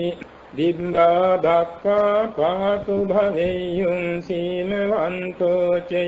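A man chanting Buddhist verses in Pali, a Theravada-style recitation held on nearly one pitch and broken into even syllables, with a brief pause about half a second in.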